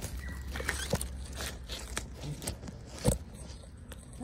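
Scattered rustling, scraping and clicking from dry leaves and grass being walked over and handled during yard cleanup, over a steady low rumble. There is one sharp, loud knock about three seconds in.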